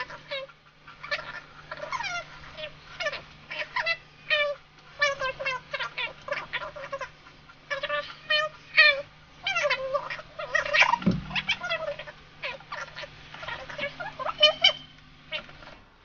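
A long, rapid run of short, high-pitched chirping and squeaking animal calls, with a single low thump about eleven seconds in and a faint steady hum underneath.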